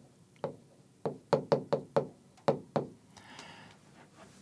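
Stylus tip tapping against the glass of a touchscreen display as capital letters are written by hand: a quick, uneven run of a dozen or so sharp taps.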